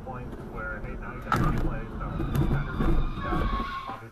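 Steady road and engine rumble of a moving car heard from inside the cabin, with indistinct voices over it.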